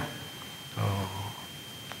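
A pause in a man's sermon, broken about a second in by a short, low hum from his voice, over a faint steady high-pitched tone from the sound system.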